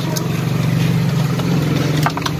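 An engine idling steadily: a low, even hum, with a faint click shortly after the start.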